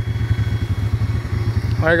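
Quad runner (ATV) engine running steadily at low revs with a fast, even chugging pulse.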